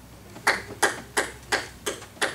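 One person clapping hands in a steady beat of about three claps a second, starting about half a second in.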